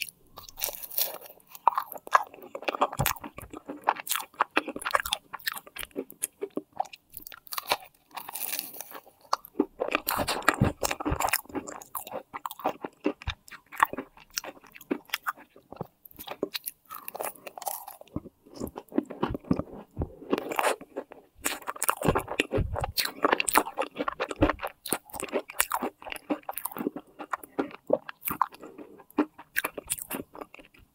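Close-miked biting and chewing of a cream puff with a crumbly golden top. The chewing is full of sharp little crackles and comes in bouts with short pauses between them.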